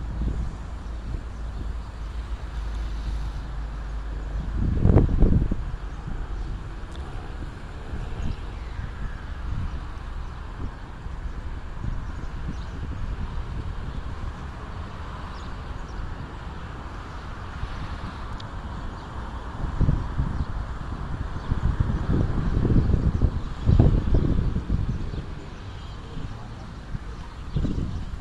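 Outdoor street ambience with wind rumbling on a phone's microphone, surging in strong gusts about five seconds in and again near the end.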